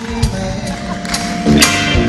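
Live rock band with horns playing a slow blues ballad: held singing and sustained notes over regular drum strokes, with a cymbal crash about one and a half seconds in.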